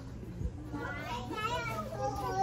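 Indistinct child's voice, high-pitched and rising and falling, starting about a second in, over a steady low hum.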